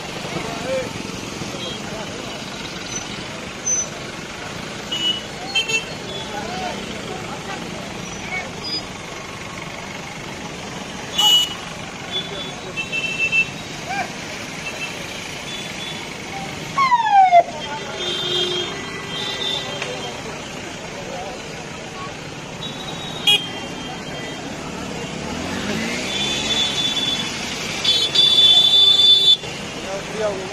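Busy street traffic, with vehicles running by and several short horn honks, the loudest near the end. Voices of people around can be heard underneath.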